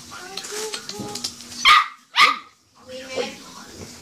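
A small dog barking twice, about half a second apart, near the middle.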